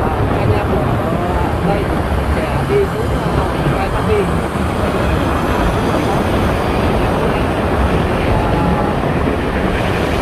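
Steady, loud road and wind noise of a ride through a road tunnel among cars and motorbikes, with no sudden events.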